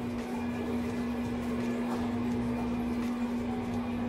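Microwave oven running with a steady electrical hum.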